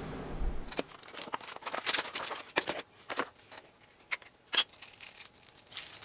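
Plastic packaging crinkling and rustling as it is handled, with irregular small clicks and taps from a plastic puck light being handled.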